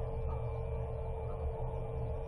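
Room tone of a recording: a steady electrical hum with low rumble and hiss, and no distinct event.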